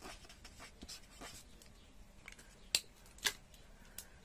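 Chisel-tip felt marker faintly scratching across paper as a word is written. Near the end come two sharp clicks about half a second apart.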